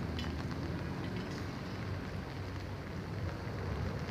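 Rain falling on an umbrella held overhead: a steady hiss with a few faint drop ticks.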